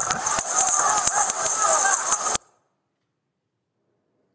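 Police body-camera recording of a crowd melee: shouting voices over a harsh, constant din, with frequent sharp knocks and clatter. It cuts off suddenly about two and a half seconds in, and near silence follows.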